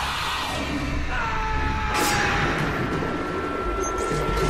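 Dark trailer score and sound design: a low drone under a dense rushing noise. A high held tone comes in about a second in, and there is a sharp hit about two seconds in.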